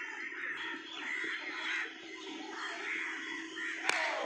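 Crows cawing repeatedly in harsh calls. Just before the end comes a single sharp crack, a cricket bat striking the ball in the nets.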